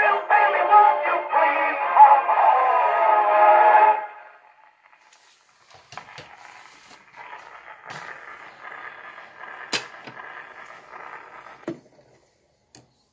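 A Victor Victrola acoustic phonograph playing the last sung line and closing chord of a 1950 78 rpm shellac record, the song ending about four seconds in. After a brief pause the needle hisses faintly in the run-out groove, with a few sharp clicks near the end as the machine is handled and the reproducer lifted.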